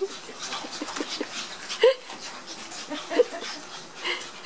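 Puppies at play giving a few short, high squeaking yips and whimpers, one rising in pitch near the middle, among small clicks and scuffles.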